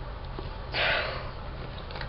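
One short sniff close to the microphone, about a second in, over a low steady hum.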